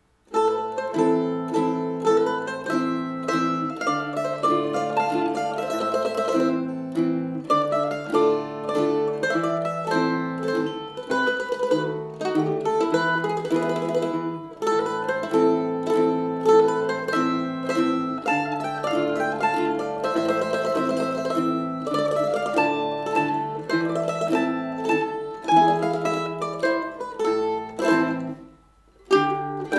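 Trio of two Mid-Missouri M-0W mandolins and a vintage Viaten tenor guitar playing a short, perky neo-classical scherzo. Quick plucked mandolin melody and harmony run over the guitar's lower notes, and the music starts abruptly right at the beginning.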